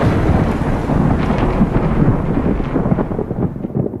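A thunder-like rumble with crackles, the tail of a heavy hit in a film soundtrack, fading away steadily.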